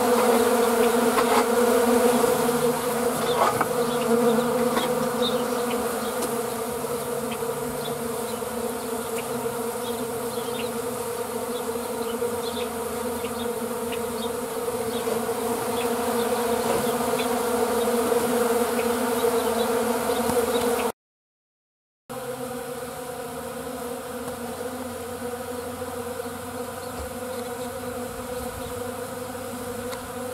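Many honeybees buzzing in a steady hum. The sound drops out for about a second two-thirds of the way in and comes back a little quieter.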